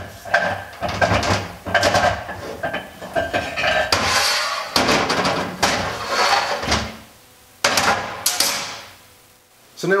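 Metal clanking and scraping as a Porsche 915 transaxle's intermediate housing and gear shift rod are worked loose and slid off the gear shafts. A second short burst of clatter comes near the end.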